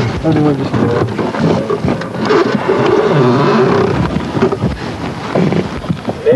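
Men's voices talking, with one drawn-out call held for a second or so about midway.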